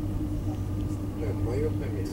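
Passenger train running past a station platform, heard from inside the carriage: a steady low rumble and hum, with people's voices talking over it.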